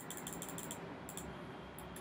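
Quiet, quick clicking of a computer mouse and keyboard: a rapid run of small clicks in the first second, then a few single clicks later.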